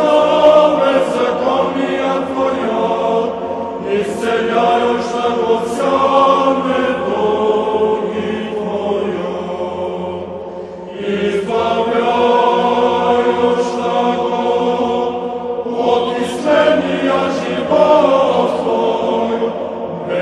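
Choir singing a slow, sustained chant in long held phrases, with a short break about ten seconds in.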